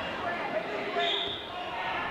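Overlapping voices of spectators and coaches calling out around a wrestling mat in a gym, with a few dull thumps from the wrestlers on the mat.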